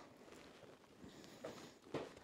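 Near silence: room tone, with a faint brief sound about one and a half seconds in.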